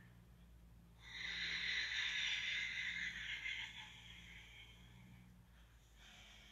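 A person's long audible exhale, starting about a second in and lasting about three seconds, over a faint steady low hum.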